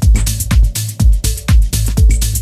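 Electronic dance music from a DJ's mix, driven by a steady four-on-the-floor kick drum at about two beats a second.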